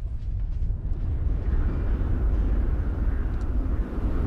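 Deep, heavy low rumble that swells about a second in and holds there. It is a dramatic build-up effect laid under slow-motion shots of a flintlock musket being aimed, just before the volley is fired.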